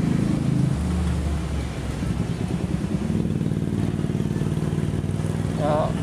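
Motor vehicle engines running steadily in passing street traffic. A deeper engine note joins for about a second near the start.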